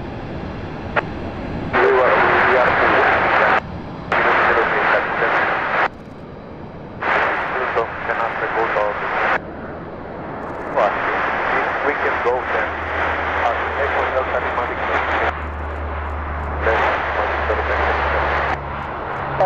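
Four-engine turboprop C-130 Hercules landing on three engines, its number 2 engine shut down. A low, steady propeller drone builds from about two-thirds of the way through as it rolls out on the runway. Several hissing, garbled bursts of air-band radio switch sharply on and off over it and are the loudest sound.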